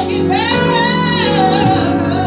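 A woman singing a gospel song into a microphone over a PA, holding one long wavering note over organ accompaniment.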